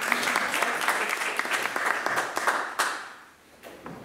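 A small audience applauding, the clapping dying away about three seconds in.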